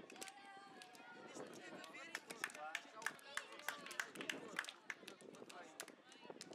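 Several children's voices calling and chattering over one another, with sharp clicks scattered through.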